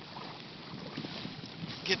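Wind noise on a phone microphone over the faint splashing of a kayak paddle working the water, a steady hiss with no clear single strokes.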